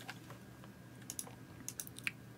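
Faint clicks from a computer mouse and keyboard: a quick pair about a second in, then a short run of about three clicks near the end.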